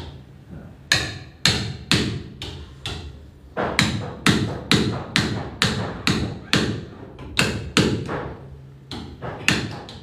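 Hand hammer driving a chisel into the hardwood timbers of a wooden boat's engine bed. A steady series of sharp blows, about two a second, with short pauses about three seconds in and again about eight seconds in.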